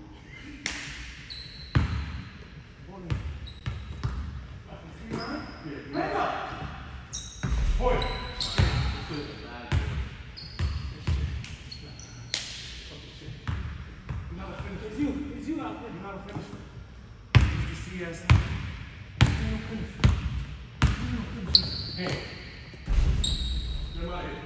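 Basketball bouncing and being dribbled on a hardwood gym floor, an irregular run of sharp thuds that echo in a large hall, with players' voices in between.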